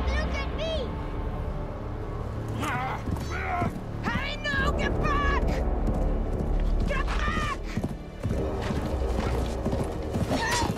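Several urgent shouted calls, a name and "No! Come back here!", over dramatic film music with a steady low drone.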